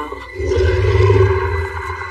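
Animated-film sound effect: a low rumble that swells about half a second in and holds, with a faint steady high tone over it.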